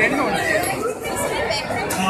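People chattering, several voices talking over one another, with no single clear speaker.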